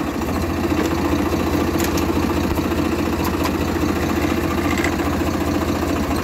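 Swaraj 855 FE tractor's three-cylinder diesel engine idling steadily, heard from the driver's seat.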